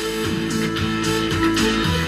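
Guitar music played through speakers driven by a homemade amplifier, the volume being turned up so that it gets a little louder near the start.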